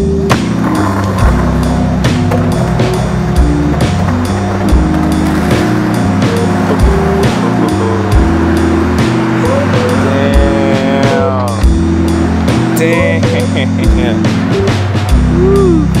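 Hip-hop backing track with a steady drum beat and a bass line, and some gliding pitched sounds about ten seconds in.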